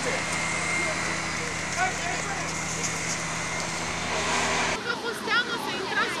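A vehicle engine running steadily with a low hum, under faint distant voices. About five seconds in, the sound cuts abruptly to several people chattering at once.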